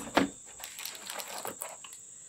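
Paper and plastic packaging rustling and crinkling as items are handled and pulled out of a cardboard shipping box, with a sharp knock right at the start and faint scattered clicks after it.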